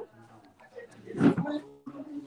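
A short, garbled voice sound about a second in, coming through a faltering video-call connection, with faint steady tones after it; the call's audio is breaking up.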